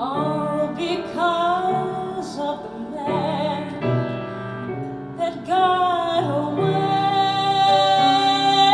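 A woman singing a slow ballad with vibrato, accompanied by piano. She holds one long note over the last part.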